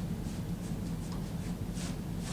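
Pens or pencils scratching on paper in short, irregular strokes, about two a second, the strongest near the end, over a steady low room hum.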